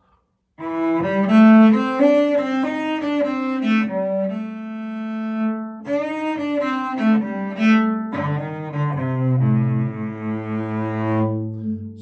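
Cello bowing a short blues phrase from the A minor blues scale, shifting from first to second position. A run of notes starts about half a second in, with one note held in the middle, then lower notes held through the last few seconds.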